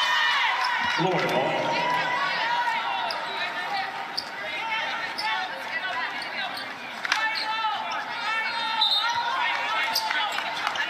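Basketball arena sound during a stoppage in play: sneakers squeaking on the hardwood court in many short chirps, and a ball bouncing, over the voices of players and crowd.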